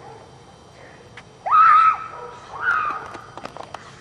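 A child screams twice: a loud, held shriek about a second and a half in, then a shorter one that falls in pitch a second later. Quick footsteps of running on pavement follow near the end.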